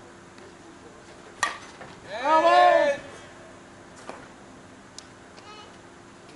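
A sharp crack, then about half a second later a loud, drawn-out shout from a person, its pitch rising and falling, lasting just under a second; a few faint clicks follow.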